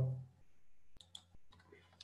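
Two quick computer mouse clicks about a second in, then a few fainter clicks, following the last fading word of a man's speech.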